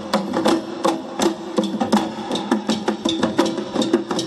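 Garo long drums (dama), long wooden drums slung at the hip, beaten by hand in a fast, dense rhythm to accompany the Wangala dance.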